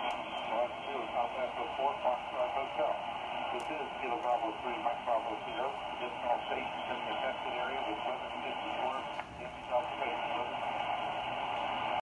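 Ham radio receiver audio on the 20-metre band: a steady, thin hiss of shortwave static with the faint, noisy voice of a distant net station coming through it, briefly dipping a little after nine seconds.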